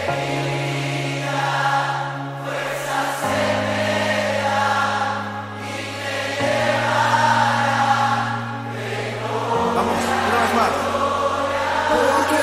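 Christian worship song: voices singing over a band, with a deep bass note held and changing about every three seconds.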